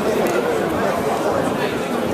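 Many overlapping voices chattering in a large hall, with no one voice standing out.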